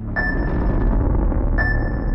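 Sputnik satellite's radio beacon: a high electronic ping, sounding twice about a second and a half apart, each dying away. Beneath it runs a low rumble, with film-score music.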